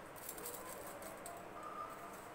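Faint, sparse crackling of mustard seeds and other whole spices just tipped into hot oil, the tempering beginning to sizzle.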